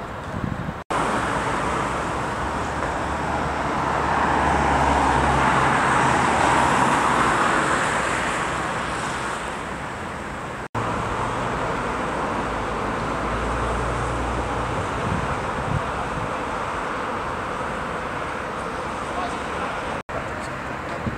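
Outdoor street ambience of road traffic, a steady rushing noise with a low hum that swells as a vehicle passes in the first half, with voices in the background. The sound cuts out briefly twice.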